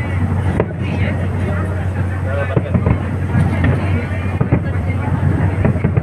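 Fireworks display bursting in irregular bangs over a murmur of people's voices, with a steady low rumble of wind on the microphone.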